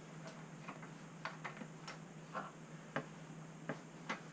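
A series of light, irregular clicks and ticks, about eight in four seconds with no steady rhythm, over a faint steady hum.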